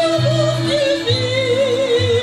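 A woman singing a Russian folk song, her held notes wavering with vibrato and stepping down in pitch, over instrumental accompaniment with a line of steady low bass notes.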